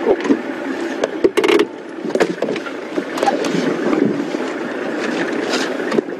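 Safari game-drive vehicle's engine running, heard as a steady rough rumble, with scattered clicks and knocks and a short loud burst of noise about a second and a half in.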